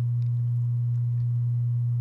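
A steady low-pitched hum, one unbroken tone, with nothing else of note over it.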